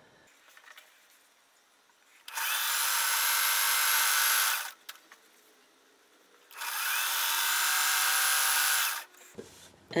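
Electric sewing machine running in two steady runs of about two and a half seconds each, with a short pause between: stitching two pairs of fabric strips together.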